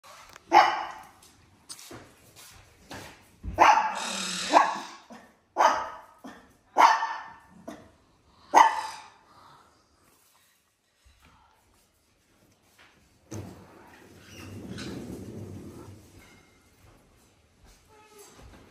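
Poodle barking: about six sharp barks over the first nine seconds, then it stops.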